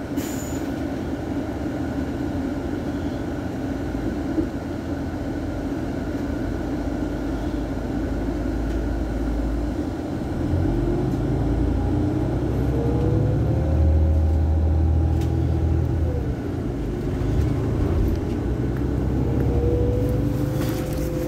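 Iveco Crossway LE Euro 6 diesel bus idling at a stop, its engine running steadily. About halfway through the low rumble grows deeper and louder for several seconds, while a faint whine slowly rises in pitch.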